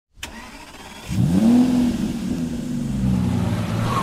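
Car engine starting: a click, a short low rumble, then about a second in the engine catches and revs up, holding a steady fast run afterward.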